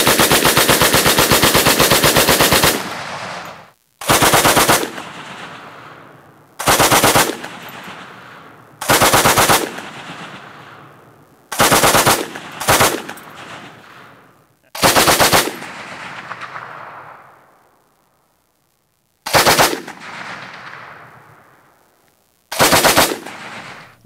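French Hotchkiss strip-fed machine gun in 8mm Lebel firing. It starts with one long burst of close to three seconds, then fires about eight short bursts, each fading off in an echo.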